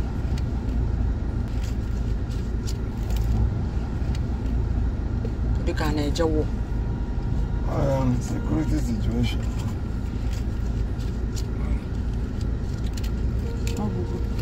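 Steady low rumble of a car sitting in traffic, heard from inside the cabin, with a few brief snatches of voices about six and eight seconds in.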